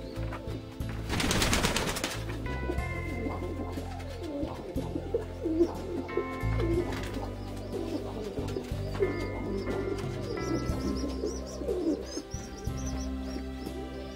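Domestic pigeons cooing over soft instrumental background music, with a second-long rustling burst about a second in.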